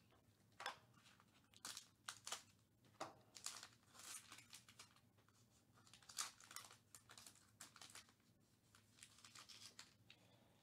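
Faint crinkling and tearing of a trading card pack's shiny wrapper as it is torn open by hand, in scattered short bursts.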